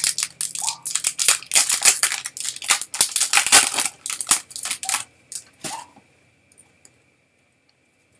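Wrapper of a 2021 Topps Opening Day baseball card pack crinkling and tearing as it is pulled open, a dense crackling for about five seconds, then a few faint rustles of the cards near the end.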